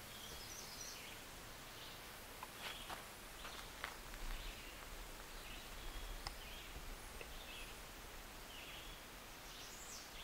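Quiet outdoor background with a few faint, short bird chirps scattered through it and an occasional small click.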